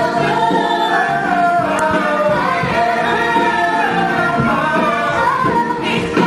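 Several voices singing a stage-musical number together, live in the theatre, with accompaniment underneath.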